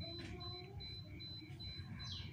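A pause with only faint background ambience: a steady low rumble with a faint high chirp repeating a few times a second.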